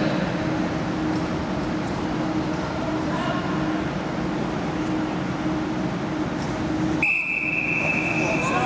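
Steady background noise of a large indoor velodrome hall with a low hum and faint distant voices. About seven seconds in, a steady high-pitched tone starts abruptly and holds.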